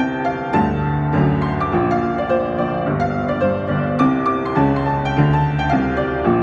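Solo piano playing an EDM tune arranged for piano, a steady stream of repeated notes and chords over a bass line.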